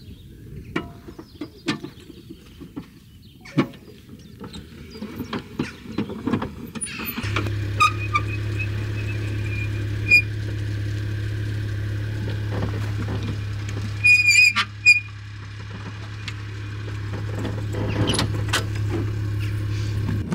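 Clicks and knocks of a teardrop caravan's corner steadies being wound up by hand. About seven seconds in, a steady low hum starts abruptly and runs on with a few short squeaks while the caravan's hitch is coupled to the car's tow ball.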